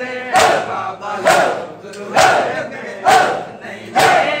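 A crowd of men doing matam, beating their chests in unison: four sharp slaps a little under a second apart, each met by a loud shouted chant from the crowd.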